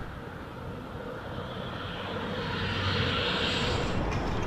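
A distant engine's steady rushing noise that grows louder over the last two seconds.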